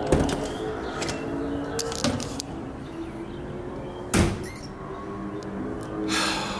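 Metal door worked by its round knob: a latch click at the start, long low drawn tones as the door moves, and a loud knock about four seconds in.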